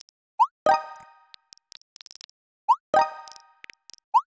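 iPhone text-message sound effects: faint keyboard clicks, and twice a quick rising swoosh of a message being sent, each followed a moment later by a ringing pop-like message alert tone that fades out.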